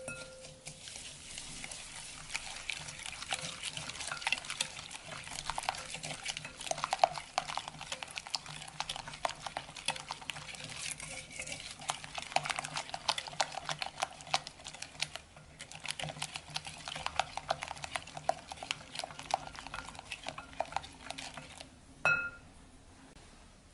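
Silicone-coated whisk beating eggs, sugar and salt in a glass mixing bowl: a continuous fast clicking of the wires against the glass, with the liquid sloshing.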